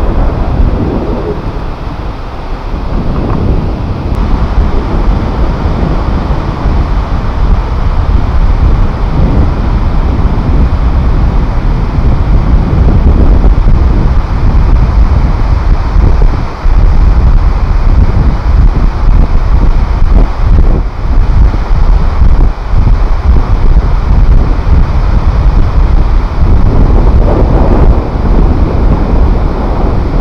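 Wind buffeting the GoPro's built-in microphone, a loud, unsteady low rumble with no engine tone in it. The level dips briefly about sixteen seconds in.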